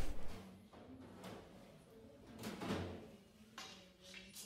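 Faint mechanical sounds of a hand-operated sheet-metal folder as its bending leaf is swung to break a fold line into an aluminium sheet, with a short sharp knock about three and a half seconds in.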